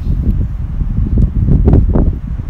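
Loud, low rumbling noise of air buffeting the microphone, coming in irregular gusts.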